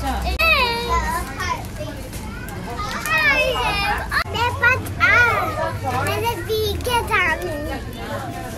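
Young children talking in high voices, their pitch rising and falling.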